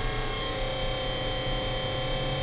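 Electric potter's wheel motor running steadily at speed, a constant hum with a faint high whine, the wheel sped up for collaring in a clay cylinder.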